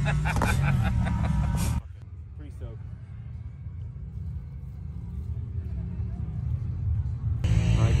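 Voices and laughter over a low, steady vehicle-engine rumble; about two seconds in the sound drops abruptly to a quieter low rumble with faint distant voices, and it comes back loud near the end.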